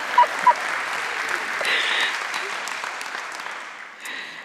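Studio audience applauding, the clapping gradually fading away over the last second or two.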